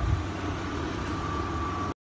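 2003 Ford Escape's engine idling, a steady low rumble, with a faint steady tone joining about halfway through; the sound cuts off just before the end.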